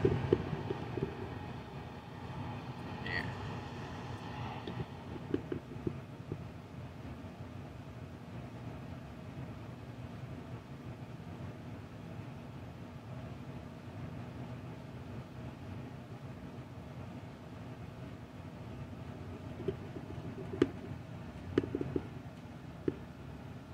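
A steady low hum runs throughout, with a brief high squeak about three seconds in and a few short knocks near the end.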